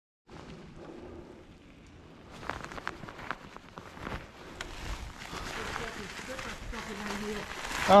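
Mountain bike rolling over dry fallen leaves on a dirt trail: tyres crackling through the leaf litter, with scattered clicks and knocks from the bike, louder from about two seconds in.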